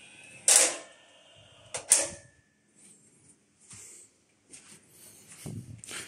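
Two sharp mechanical clacks about a second and a half apart, then only faint scattered small noises.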